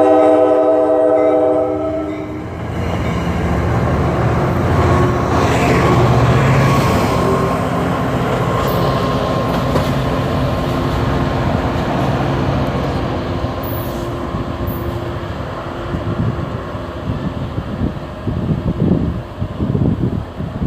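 NJ Transit diesel train's horn sounding a multi-note chord for the first two seconds or so, then the steady rumble of the engine and wheels as the train passes and pulls away. Wind buffets the microphone near the end.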